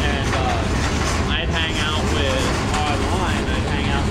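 Freight train covered hoppers rolling past, a steady low rumble of steel wheels on rail, with intermittent high squeaking from the wheels and flanges that rises and falls in pitch.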